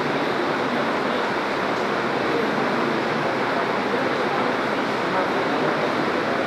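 Steady, dense room noise of a hall with an indistinct murmur of voices running through it, no single event standing out.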